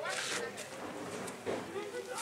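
Indistinct voices talking in the background, with a short hissing noise at the very start.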